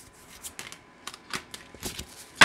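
Stiff cards being slid out of a fanned deck and laid down on other cards: a few short, soft clicks with light rubbing in between.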